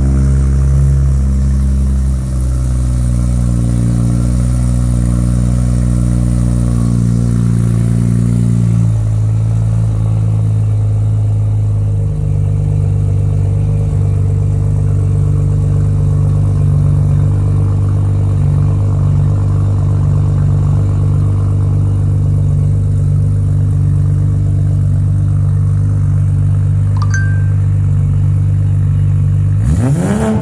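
2020 Toyota Supra A90's turbocharged 3.0-litre inline-six idling right after a cold start, through a 4-inch single-exit stainless-steel exhaust, a loud, steady, deep drone. The fast cold idle settles lower in two steps, about a third of the way in and again shortly after.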